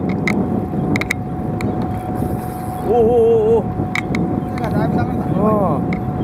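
Fishing boat's engine running steadily, with a thin steady tone and a few scattered sharp clicks, while a man lets out a drawn-out "ooh" about three seconds in.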